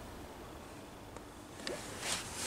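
Quiet background hiss with a single faint click about a second in, and light rustling of hand movement starting near the end.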